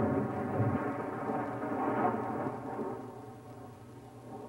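Thunderclap sound effect for a stage storm: a loud rumble that fades away over a few seconds.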